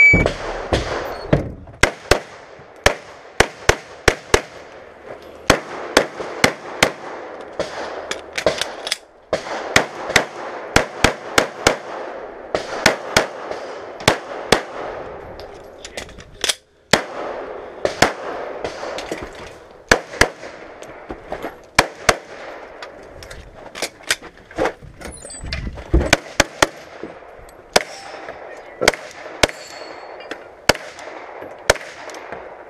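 Shot timer beep, then a Glock 34 9mm pistol fired in quick pairs and short strings, with brief pauses between strings.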